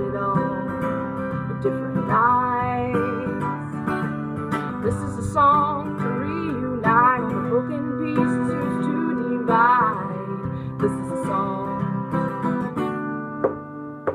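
A woman singing a slow song with held, wavering notes over her own strummed acoustic guitar.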